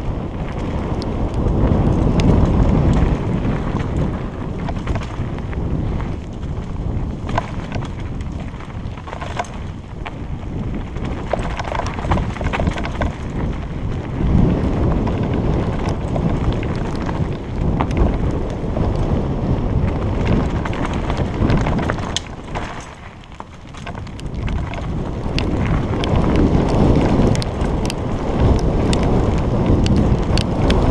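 Wind buffeting the microphone while a mountain bike speeds down a rough dirt trail: a steady rumble of tyres and rushing air, with small clicks and rattles from the bike over the bumps. The noise eases briefly about three quarters of the way through, then builds again.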